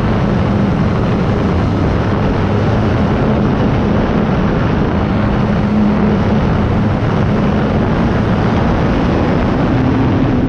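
Onboard sound of an E-flite Night Timber X electric RC plane in flight: the steady hum of its motor and propeller, with a low tone that wavers slightly, under loud wind rush on the camera's microphone.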